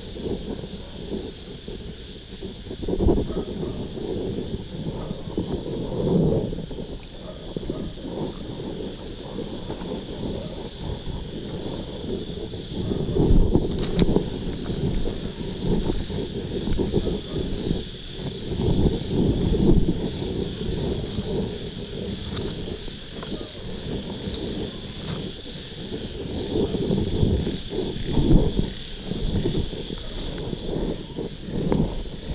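Night insects chirring in a steady high-pitched drone, over which come irregular low rustling and bumping surges as the person moves through the ditch vegetation and handles the camera and crab bag, with a sharp click about fourteen seconds in.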